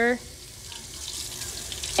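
Tap water running in a steady stream from a gooseneck faucet into a stainless-steel sink.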